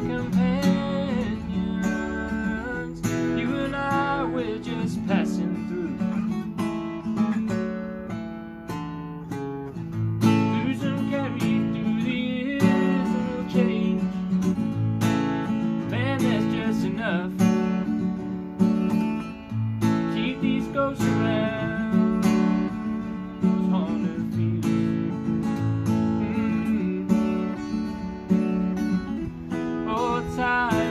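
A cutaway acoustic guitar played steadily through a song, with a man's singing voice over it.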